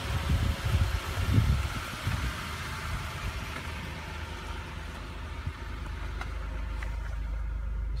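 Toyota Sienna minivan engine idling steadily with its 12-volt battery removed and a solar panel wired in its place. Bumps and rustling on the microphone come in the first couple of seconds. Near the end the hiss drops away, leaving a steady low hum.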